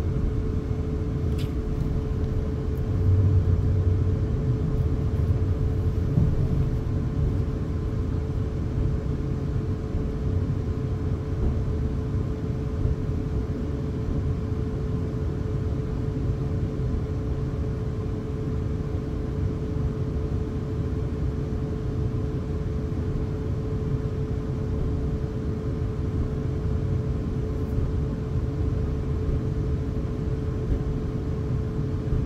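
Class 450 Desiro electric multiple unit heard from inside the passenger saloon while running: a steady low rumble of the moving train with a constant hum over it, a little louder a few seconds in.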